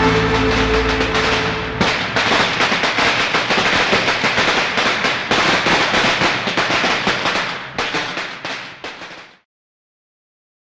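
Music fades into a long string of firecrackers crackling densely and irregularly from about two seconds in, thinning and dying away a little before the end.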